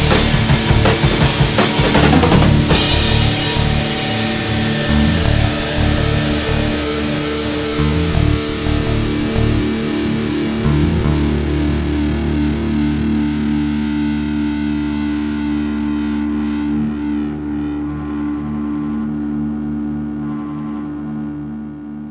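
Heavy metal music ending: a drum kit playing hard for the first few seconds, then a distorted electric guitar chord held and slowly fading away.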